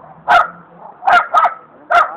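A dog barking loudly four times in short, unevenly spaced barks.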